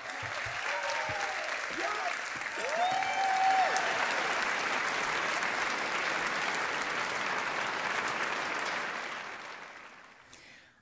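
Audience applauding, with a few voices cheering and one held whoop in the first few seconds; the applause fades out near the end.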